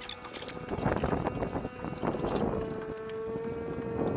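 Splashes and knocks from people wading in shallow lake water beside a floatplane's floats and handling a mooring rope, with wind on the microphone. About halfway through, a steady humming tone with a clear pitch comes in and holds.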